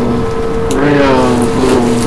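A man's voice giving a brief, drawn-out vocal sound about a second in, over a constant steady hum.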